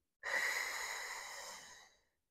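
A woman's long exhale, a breathy hiss starting sharply and fading away over about a second and a half, as she holds a core-engaged leg-circle exercise.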